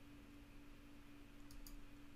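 Near silence with a steady low hum, and two faint computer-mouse clicks about one and a half seconds in.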